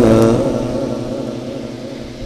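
A Quran reciter's long held note, sung through a microphone and loudspeakers, ends about a third of a second in and leaves an echo that fades away steadily.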